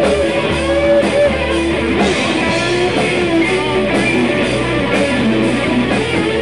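Live rock band playing: electric guitars sustaining notes over a drum kit.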